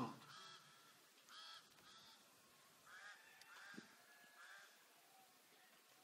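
Near silence, with about six faint, short, high-pitched calls in the background spread through the pause.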